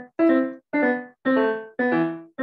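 Piano played in short, evenly spaced notes or chords, about two a second, each dying away. Heard over a video call that cuts each note off abruptly into silence.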